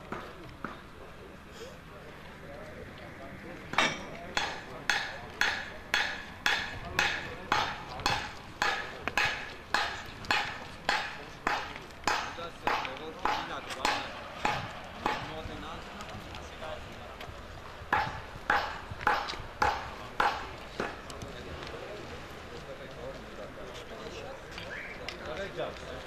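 Footsteps on a hard paved roadside, a steady walk of about two sharp steps a second starting about four seconds in and lasting some ten seconds, then a few more steps a little later.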